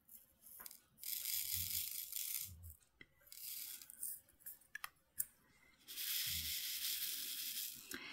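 Small resin diamond-painting drills pouring and rattling in a plastic tray: two spells of soft hiss of about two seconds each, with a few light clicks between.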